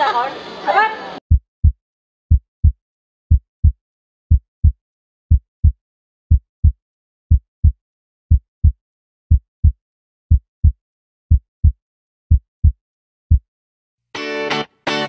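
Heartbeat sound effect: a low double thump, lub-dub, repeating steadily about once a second, in otherwise total silence.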